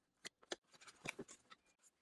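Faint rustling and a few soft clicks of a cardboard retail box being handled as its tear strip is pulled open.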